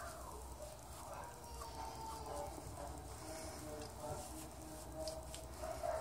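Faint, drawn-out wavering cries in the background, coming in several short stretches over a low steady hum.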